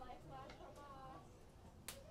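Faint distant voices, with one sharp crack just before the end.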